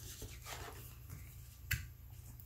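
Tarot cards being handled on a wooden tabletop as one card is swapped for the next: faint rubbing, then a single sharp card snap about three-quarters of the way through.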